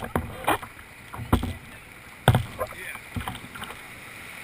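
Kayak paddling: irregular knocks and splashes of the paddle striking the water and the hull, over rushing water from a small weir.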